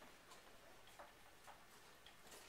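Near silence: room tone with about three faint clicks.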